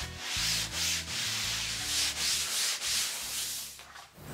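Repeated rubbing strokes over a sheet of cloth on a work table, about two a second.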